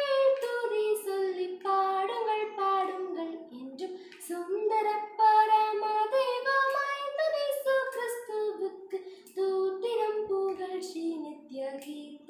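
A young girl singing a Tamil Christian song solo and unaccompanied, one voice moving through a melodic line phrase by phrase with short breaths between.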